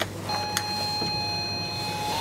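An elevator car button pressed with a click, followed by a steady electronic beep from the car's signal that holds for nearly two seconds, with another light click partway through.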